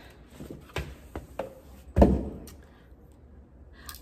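Handling of a stethoscope and its packaging: a few light clicks, then a single loud thump about two seconds in.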